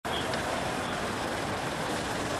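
Steady road traffic noise: an even rush of passing cars with no distinct events.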